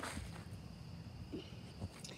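Quiet outdoor background with phone handling rustle, a short burst of it at the start, and faint footsteps on wood-chip ground.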